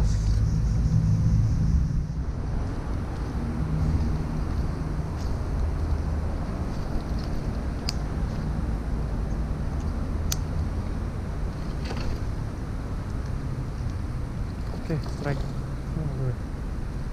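Steady low rumble of nearby road traffic, a little louder in the first two seconds, with a few sharp ticks scattered through it.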